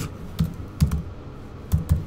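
Typing on a computer keyboard: about half a dozen separate, unevenly spaced keystrokes.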